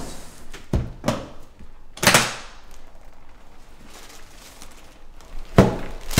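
A hard-shell briefcase being handled on a table: a few separate knocks and clunks, the loudest about two seconds in, and another sharp knock a little before the end.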